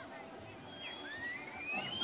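Faint voices of people outdoors, with one long rising whistle-like note through the second half.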